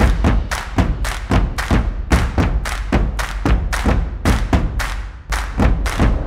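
Show-opening theme music driven by a fast run of percussive drum hits, about four a second, over a deep bass.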